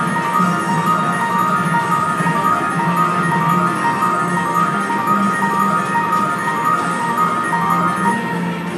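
Star Wars video slot machine playing its big-win celebration tune: a looping electronic jingle of short repeating chime notes over a low pulsing part, sounding while the win meter counts up.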